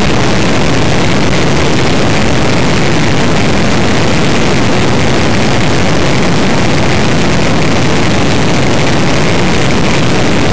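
Land speed racing car running at speed, heard from an onboard camera in its cockpit: a steady, loud, even rush of engine and wind noise with no change in pitch.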